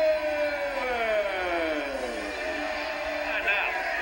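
A long drawn-out vocal sound from a television broadcast that slides slowly down in pitch over about three seconds. A man's commentary begins near the end.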